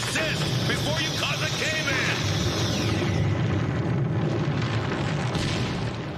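Cartoon sci-fi sonic-blast sound effect: a piercing high screech with chirping squeals over a heavy low rumble, the screech cutting off about halfway while the rumble carries on.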